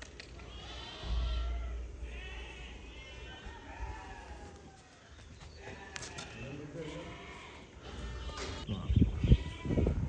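Sheep bleating, several wavering calls a few seconds apart, with a few low thumps near the end.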